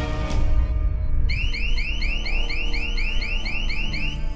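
Rapid electronic warning beeps from a spaceship's computer alarm, about four a second, starting about a second in, over a low droning music score. The alarm signals that UHF signal degradation is too high.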